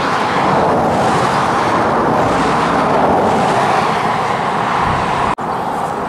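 Road traffic passing close at speed: a steady rush of tyre and engine noise that cuts off suddenly about five seconds in.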